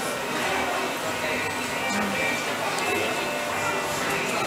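Background music playing over indistinct voices in a busy café.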